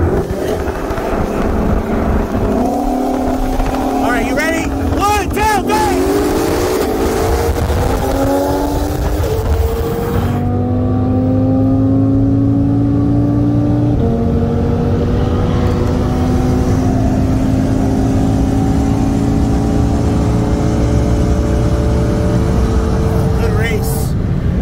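Turbocharged inline-five of a tuned Audi RS3 with a full turbo-back exhaust, heard from the cabin at full throttle in a roll race from 50 mph. The engine note climbs steadily in pitch, drops at gear changes about ten and fourteen seconds in, then rises slowly at high speed.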